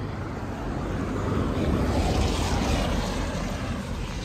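A motor vehicle passing by on the road, its engine and tyre noise swelling to a peak about halfway through and then fading.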